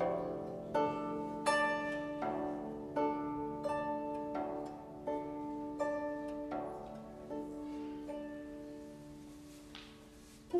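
Guzheng trio playing slow, single plucked notes about every three-quarters of a second, each left to ring on; the playing grows steadily quieter toward the end.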